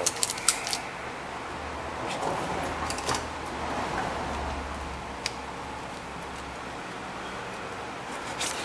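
Steady workshop background hum with a few light clicks and taps from parts and tools being handled: a quick cluster at the start, another about three seconds in, and a single tick a little after the middle.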